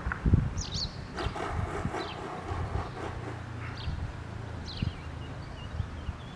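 Small birds chirping in short calls, with wind gusting on the microphone in low rumbling bursts.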